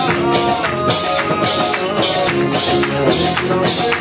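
Devotional kirtan music: a steady beat of jingling hand cymbals and drum under sustained harmonium-like tones.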